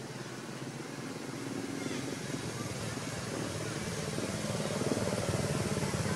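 A motor-like drone running steadily and growing louder over the last few seconds.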